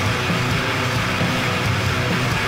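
Crust punk band playing: heavily distorted guitars, bass and drums at a steady loud level, with no shouted vocals in this stretch.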